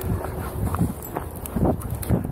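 Footsteps walking on grass, heard as irregular soft thuds through a chest-mounted camera.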